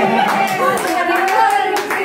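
A handful of hand claps, sharp and unevenly spaced, from people clapping along with voices.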